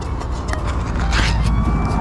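Ring-pull lid of a metal can of peas being opened: a click as the tab lifts about half a second in, then a short tearing scrape as the lid peels back about a second in.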